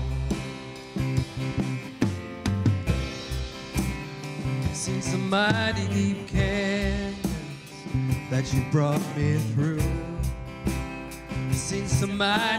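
Live worship band playing a song on drum kit, electric bass and acoustic guitar, with a voice singing phrases at times.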